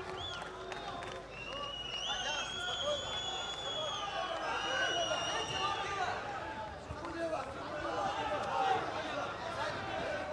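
Crowd of spectators shouting and calling out to the fighters, with several long, high, steady whistles in the first half.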